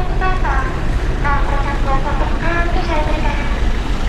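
Voices talking in short phrases over a steady low rumble.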